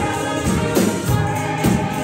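Live gospel music: a small group of voices singing together over a steady beat, with a tambourine shaken in time.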